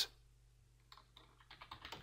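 Faint typing on a computer keyboard: a quick run of key clicks starting about halfway through.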